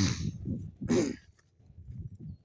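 Footsteps of someone walking along a dry grass path, with two short breathy huffs about a second apart.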